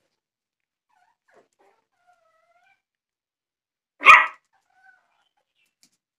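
A puppy whimpering faintly in short rising whines, then giving one sharp bark a little after four seconds in.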